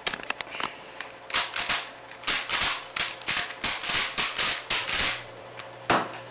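Plastic Rubik's cube layers being turned by hand: a quick run of scraping, clacking twists, about two to three a second, with sharper clicks in between, stopping about five seconds in.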